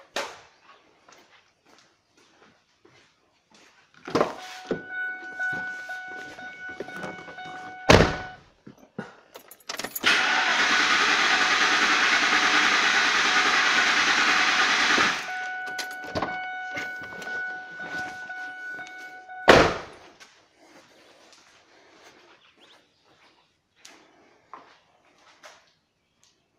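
Ford F-150 engine cranking on its starter for about five seconds, wide-open throttle, during a crank compression test; the cranking cuts off about fifteen seconds in. A steady warning tone sounds before and after the cranking, with a loud thump a few seconds before it and another a few seconds after.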